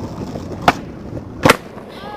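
Skateboard wheels rolling on pavement, with two sharp clacks of the board about a second apart.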